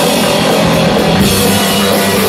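Rock band playing loud live: electric guitar and electric bass over a drum kit, in a dense, unbroken wall of sound.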